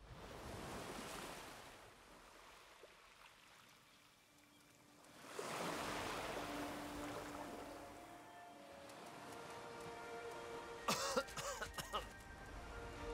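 Soft surf washing up on a sandy beach in two gentle swells, with faint sustained music tones coming in about halfway. Near the end, a short burst of sharp, cough-like vocal sounds.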